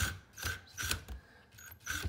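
Cordless drill driving the screws that clamp an old-work electrical box to drywall, run in short bursts about twice a second as the box is tightened onto the wall.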